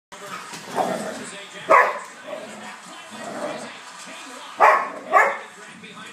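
Labradoodles barking while play-fighting: four short, sharp barks, the last two close together near the end.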